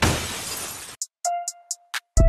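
Glass-shattering sound effect in a title sequence: a sudden crash that dies away over about a second, followed by a few short high ticks and a held tone.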